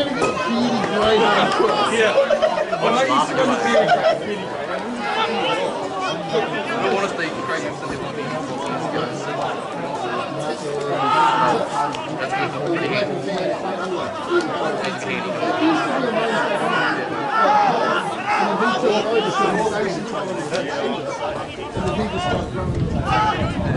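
Indistinct chatter: several voices talking over one another, the spectators near the camera.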